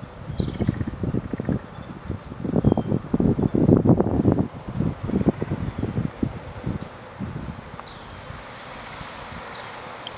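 A steady, high-pitched insect drone runs throughout. Over it, wind buffets the microphone in low, rumbling gusts, strongest about three to four seconds in, and these fade out after about eight seconds.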